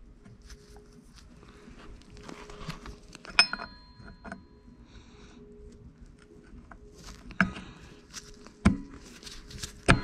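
Handling noise and a few sharp metallic clinks as the brake arm is worked onto the splined cam of a Honda CB750 rear drum brake panel. The loudest clink, about three and a half seconds in, rings briefly; three more come near the end.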